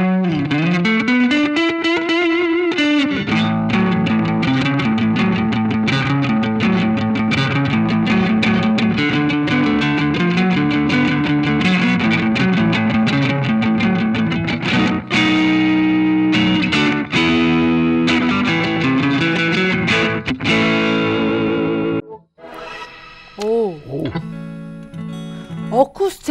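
Electric guitar played through a Boss GT-1000CORE multi-effects processor on its Country Twang preset: a long run of quick picked notes that stops about 22 seconds in.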